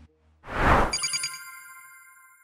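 A whoosh about half a second in, then a bright chime of several ringing tones that rings on and slowly dies away: an outro logo sting.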